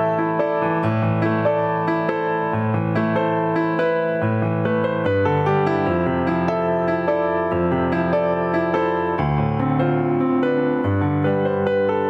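Solo piano music played live on a Korg Kronos keyboard workstation: a slow melody over held bass notes that change every second or two.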